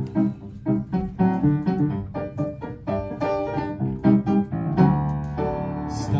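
Upright piano playing the introduction to a song, a steady run of chords.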